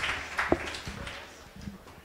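Applause dying away into a few scattered claps.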